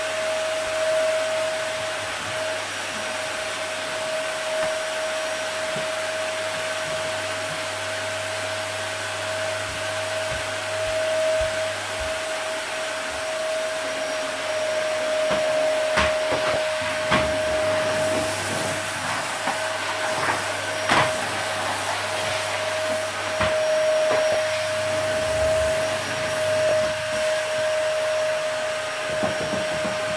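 Steady whirring, hissing drone of an electric motor-driven appliance, holding one constant hum pitch. A few brief clicks or knocks come past the middle.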